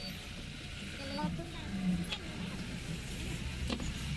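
Steady low background rumble with faint voices in the distance, and two sharp clicks about two and three and a half seconds in.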